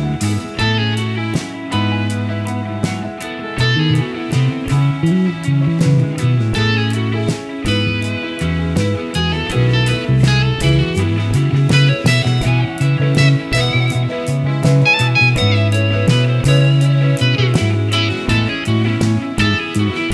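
Live rock band playing an instrumental break: an electric guitar plays a lead line over electric bass and a steady drum beat.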